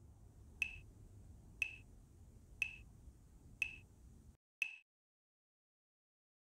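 Five sharp, evenly spaced ticks, one a second, like a metronome beat track, over a faint low hum. The hum cuts out about four and a half seconds in, just before the last tick, and then there is silence.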